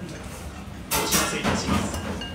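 A person slurping spicy tantanmen broth from a ramen spoon: one loud slurp starting about halfway through and lasting about a second.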